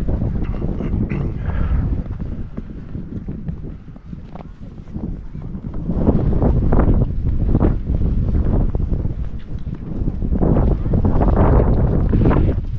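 Wind buffeting the microphone: a loud low rumble that swells and sags in gusts, easing for a moment about four seconds in and building again after six seconds.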